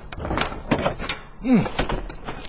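Radio-drama sound effect of a locked door being tried: a metal latch rattled and clicking, with several knocks of the door against its frame, and it does not open.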